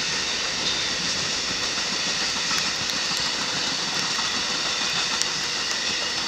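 Amtrak passenger train's bilevel cars rolling past on the rails: a steady rushing noise of wheels on track, with a few faint clicks.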